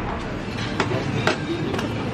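Restaurant background: a steady murmur of voices with four sharp clinks of dishes and cutlery.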